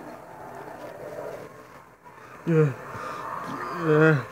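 A person's voice making two short grunts that fall in pitch, the first about two and a half seconds in and the second near the end, over faint background noise.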